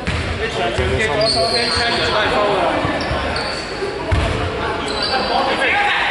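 A basketball bouncing a few times on a sports-hall court, with thuds about the first second and again about four seconds in, echoing in the large hall. Voices carry throughout, and short high squeaks come several times.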